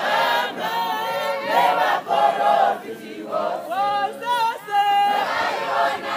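Mixed church choir of men's and women's voices singing a Shona hymn in harmony, unaccompanied.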